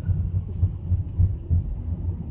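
Uneven low rumble of a car heard from inside its cabin.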